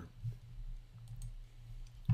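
A few faint computer mouse clicks over a steady low hum.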